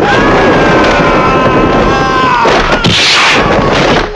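A man's long, loud yell held for about two and a half seconds over a dense noisy bed, then a short noisy crash about three seconds in.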